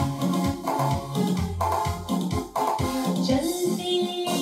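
Electronic keyboard playing an instrumental introduction with an organ-like tone over a repeating bass line.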